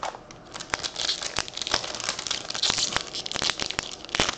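Foil wrapper of a 2017 Series 1 baseball card pack crinkling and tearing as it is ripped open: a dense, continuous crackle with many sharp clicks, starting about half a second in.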